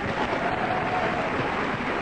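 Studio audience applauding, a steady even clatter of clapping.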